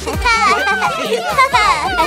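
Several high-pitched cartoon character voices cheering and squealing together over children's background music.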